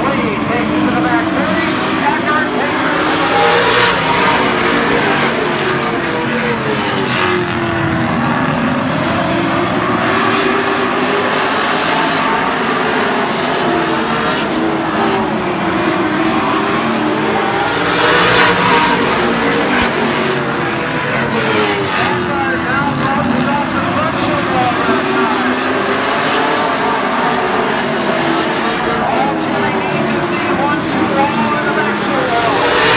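A pack of late model stock cars racing on an oval, many V8 engines rising and falling in pitch together as they lap. The sound swells loudest as the pack passes closest, about 3 s and again about 18 s in.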